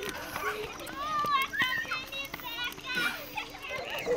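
Children's voices in the background, chattering and calling out over one another, with a few faint clicks and a low steady hum underneath.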